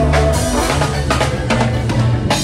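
A live band playing, the drums prominent with sharp strokes over a steady bass line.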